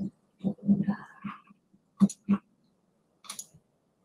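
Short, broken fragments of a person's voice, murmured half-words, with a couple of brief clicks about two and three seconds in.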